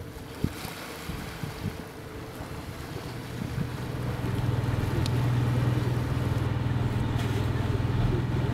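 A faint wash of wind and water, then from about three seconds in a steady low hum that grows louder and holds.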